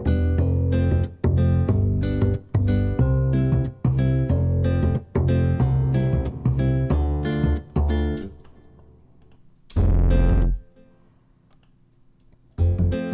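Sampled acoustic double bass from UJAM's Virtual Bassist Mellow plug-in playing a plucked pattern of low notes. The line stops about eight seconds in and one last low note sounds near ten seconds.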